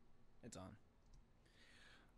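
Near silence: a muttered voice briefly, then a single faint click of a computer mouse about a second in.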